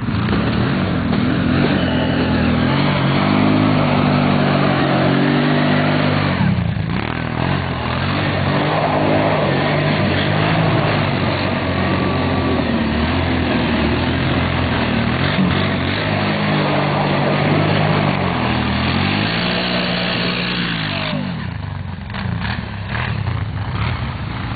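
Kawasaki Brute Force ATV engine revving as the quad is ridden through snow, its pitch rising and falling repeatedly. It drops off briefly about a third of the way in, settles lower and quieter near the end, then picks up again.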